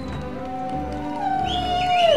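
A long drawn-out cheer from one voice, a single held note that falls away at the end, over steady background music.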